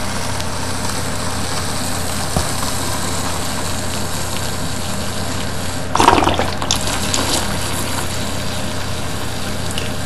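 Water poured in a steady stream from a large plastic bottle into a plastic measuring jug of solution, topping it up to a litre. There is a brief louder splash about six seconds in.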